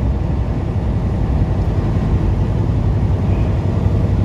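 Steady low drone of a semi truck cruising on the highway, heard from inside the cab: engine and road noise, even throughout.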